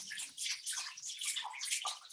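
Faint, irregular high hiss with flickering, spattering texture, like running water, in a pause between spoken sentences.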